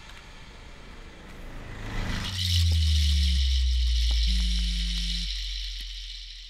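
Deep low drone on the film's soundtrack, swelling in a little over two seconds in and slowly fading, with a buzzing hum that sounds twice for about a second each and a thin high hiss above it.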